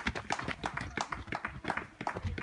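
Several trail runners' footsteps on a dirt and stone path: a quick, irregular patter of footfalls.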